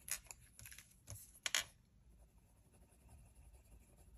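Faint scratching of a pencil stroking over paper, a few short strokes in the first two seconds, the loudest about one and a half seconds in.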